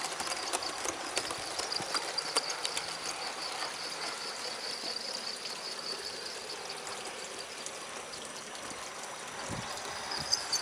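7mm-scale model goods wagons rolling along the track: a steady running rumble with scattered light clicks from the wheels crossing rail joints, slowly fading as the train moves away.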